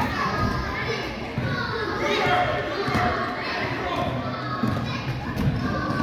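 Children's voices and shouts echoing in a gymnasium, with a basketball bouncing on the hardwood court and thudding footfalls.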